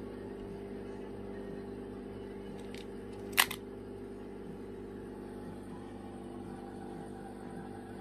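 A steady low hum with one sharp click about three and a half seconds in, and a fainter click shortly before it.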